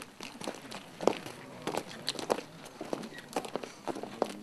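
Footsteps of several people walking, heard as irregular knocks and clicks.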